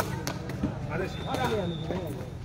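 Sharp knocks of a sepak takraw ball being kicked, several times: the serve and the first touches of the rally, with crowd voices around.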